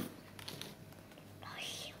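Paper trading cards being handled in the hand, with faint sliding and a few light clicks as one card is moved off the stack to show the next.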